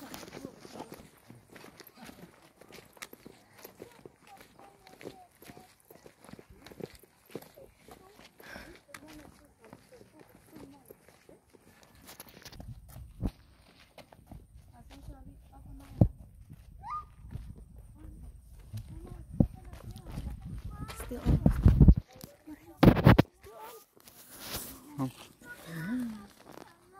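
Footsteps on a dirt-and-gravel path as several people walk, heard as many short scuffs through the first half, followed by a low rumble and a couple of louder thumps near the end.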